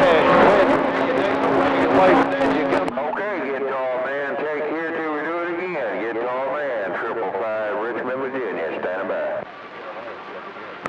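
CB radio receiver speaker carrying a distant skip station: a voice comes through garbled and hard to make out, buried under static and a steady hum for the first three seconds, then clearer until it drops out near the end.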